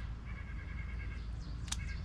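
A bird's rapid trill on a steady pitch, lasting about a second, then a shorter burst of the same trill. A sharp click comes near the end, over a steady low rumble.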